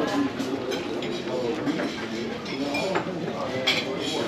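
Background voices of people talking, with clinks of dishes and cutlery; one sharper clink near the end.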